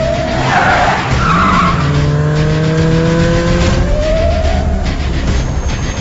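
Car engine revving, its pitch gliding upward several times, with a brief screech of skidding tyres about a second in.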